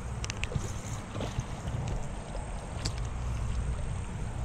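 Wind rumbling on the microphone, steady, with a few faint scattered clicks and taps.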